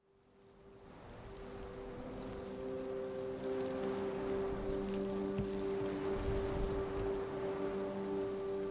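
An ambient music soundtrack fading in from silence: a sustained low chord held steady over a continuous hiss of rain.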